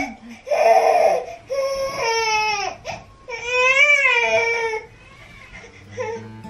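An eight-month-old baby crying: three long wails, each wavering up and down in pitch, with short catches of breath between them, then quieter near the end.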